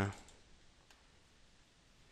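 The end of a hummed 'da', then a quiet stretch with a single faint computer mouse click about a second in.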